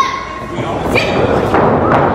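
Two heavy thuds of wrestlers hitting the ring mat, amid shouting voices.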